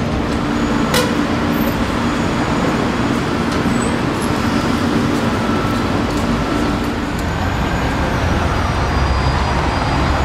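Steady city street traffic noise, with a low engine hum running through most of it and fading near the end; a single sharp click about a second in.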